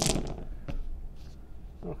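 A handful of about eleven small six-sided dice thrown onto a tabletop gaming mat, clattering and tumbling for about half a second, with one more click a little later as a die settles.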